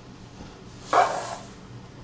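A single short breathy exhale from a person, about a second in, swelling and dying away within half a second.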